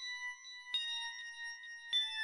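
Slow, bell-like chime music. Two struck metallic notes, one just under a second in and one near the end, ring on and overlap the notes still sounding from before.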